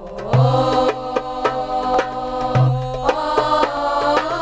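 A girls' vocal group singing a nasheed in unison, holding long notes that slide between pitches. A drum keeps time underneath, with a low beat about every two seconds and lighter strikes in between.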